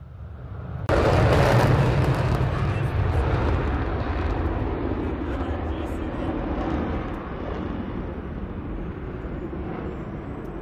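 Jet aircraft engine noise: a loud rushing sound that comes in suddenly about a second in, then slowly fades and dulls.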